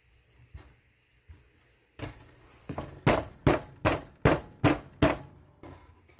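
Loaf mold full of thick cold-process soap batter knocked down on a table six times, about two and a half knocks a second, to settle and level the batter. A few faint clicks come before the knocking starts.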